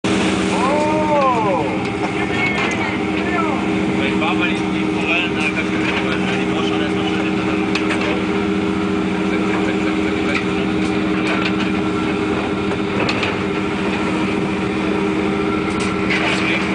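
Fishing boat's engine running with a steady low drone, gulls calling overhead with a few rising-and-falling cries in the first couple of seconds, and scattered knocks and clatter on deck.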